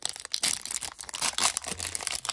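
Foil trading-card pack wrapper crinkling and crackling in the hands as it is handled and turned over.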